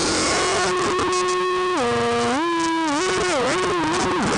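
Distorted electric guitar holding one sustained note over a wash of noise. About two seconds in the note drops in pitch and comes back up, then wobbles up and down near the end.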